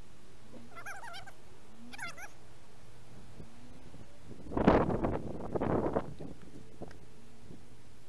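A cat meowing: two faint, short, wavering meows in the first couple of seconds, then a louder, rougher cry in two parts about halfway through.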